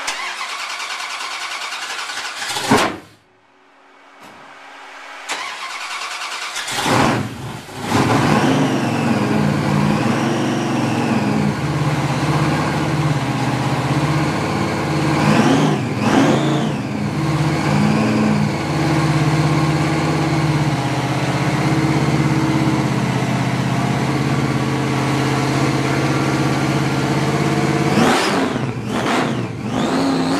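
Blower-supercharged V8 in a Dodge Charger. A first burst of sound cuts off sharply, then the engine fires up after a few quieter seconds and settles into a loud, lumpy idle, its pitch rising and falling with several throttle blips.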